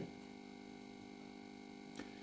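Faint room tone with a steady, unchanging hum.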